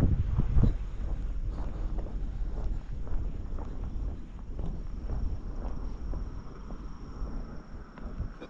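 Footsteps on asphalt with wind buffeting the microphone, the wind rumble heavier in the first couple of seconds.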